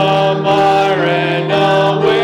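Slow sacred singing: a voice holds long notes, moving to a new note about every half second, over a steady low held accompaniment note.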